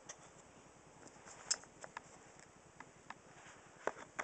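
Faint handling of blue plastic industrial cable connectors as they are pushed and fitted together: scattered small clicks and scrapes, the loudest about a second and a half in.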